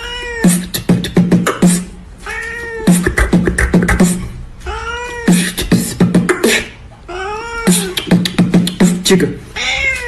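A cat meowing in turns with a man's beatboxing. Quick mouth clicks and low kick-like thumps are broken about every two and a half seconds by one meow that rises and falls in pitch.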